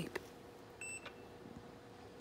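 A single short, high-pitched electronic beep from a digital multimeter, about a second in.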